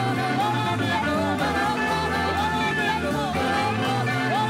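A woman singing lead into a handheld microphone, backed by a live band of grand piano and electric guitars.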